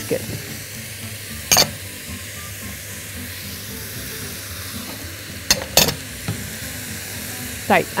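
Diced vegetables and chicken pieces sizzling as they sauté in a hot pot, with a steady frying hiss. Three sharp knocks against the pot cut through it: one about a second and a half in and two in quick succession a little past halfway.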